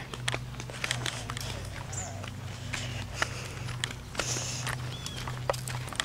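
Footsteps on a concrete sidewalk, with scattered light clicks and taps over a steady low hum.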